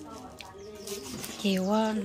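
A woman talking in drawn-out, sing-song vowels.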